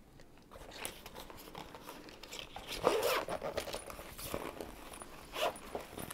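Zipper of a small fabric tech-organizer pouch being worked open in short, uneven strokes, with handling rustle of the fabric; the loudest pull is about halfway through.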